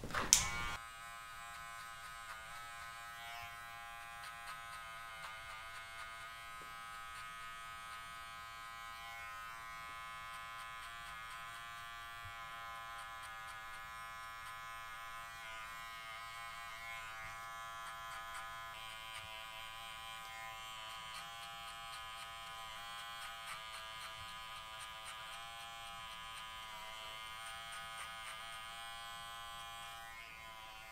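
Cordless electric hair clipper running steadily as it cuts short hair, its motor buzz drifting slightly in pitch, after a click right at the start.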